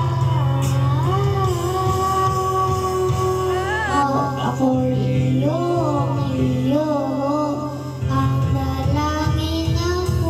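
A child singing a pop song into a karaoke microphone over the backing track played through a home stereo; the backing's bass thins out about four seconds in and comes back near the end.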